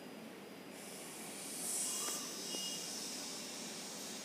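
Sizzling from a pan of chayote thokku frying uncovered as its water cooks off. It rises a little under a second in, is loudest around two seconds, then eases to a steady hiss.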